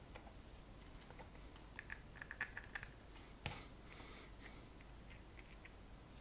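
Small plastic clicks and rattles as a cheap disco light's clear faceted plastic dome and housing are handled during reassembly. There is a quick cluster of sharp clicks about two to three seconds in and a single knock a moment later.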